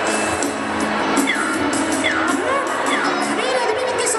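A crowd cheering and whooping, with music playing underneath.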